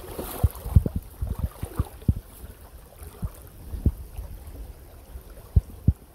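Irregular low thumps and a steady low rumble on a handheld microphone, over the faint running water of a shallow, rocky creek.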